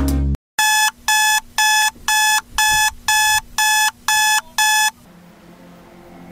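Electronic beeping: nine evenly spaced beeps of the same pitch, about two a second, stopping about five seconds in.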